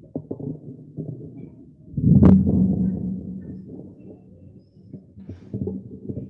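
Handling noise from a microphone being moved and set up: small knocks and rubbing, with one loud bump about two seconds in that rings on and fades over the next two seconds. The sound is muffled and narrow, as through a video-call stream.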